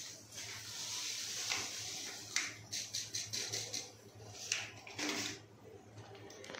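Drain-cleaner powder poured from a torn sachet into a blocked bathroom floor trap: a soft hiss for about two seconds, then several faint rustles and clicks.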